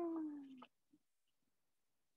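The tail of a woman's drawn-out, wailing cry, acted as a child calling for his father. It falls steadily in pitch and fades out about half a second in, followed by near silence.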